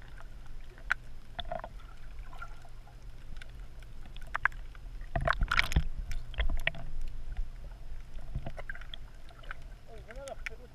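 Muffled underwater sound picked up by a submerged camera: a steady low hum with scattered clicks and knocks, and a burst of louder knocks and splashy noise about five to six seconds in.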